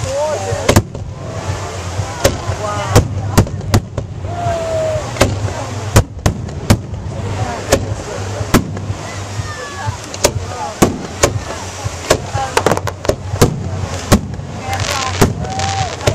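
Aerial fireworks display: a rapid, irregular string of sharp shell bursts, two to three a second, with onlookers' voices heard between the bangs.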